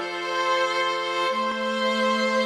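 Background music: bowed strings playing slow, held chords, the lowest note stepping up a little past a second in.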